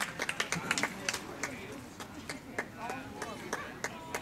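Scattered hand clapping from a few spectators applauding a home run, thinning out over the first two seconds, with faint voices talking near the end.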